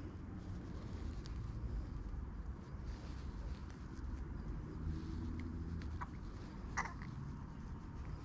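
Low, steady rumble of wind and handling noise on a body-worn camera's microphone, with a few faint clicks and one short, sharper sound about seven seconds in.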